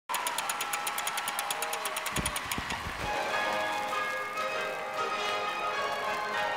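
Rapid, evenly spaced ratchet clicking as a gramophone's hand crank is wound, ending with a few low thuds about two seconds in. From about three seconds in, bell-like chiming music takes over.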